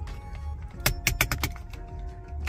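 A quick run of sharp plastic clicks, about five in half a second, a little under a second in, as the cradle of a visor-mounted phone holder is flipped around from horizontal to vertical. Quiet background music plays underneath.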